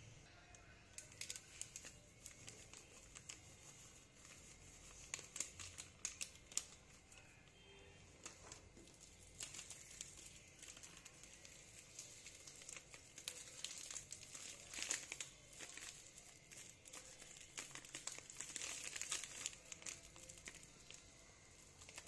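Thin plastic flour packets crinkling and rustling in the hand as flour is shaken out of them into a steel bowl, in faint, irregular bursts.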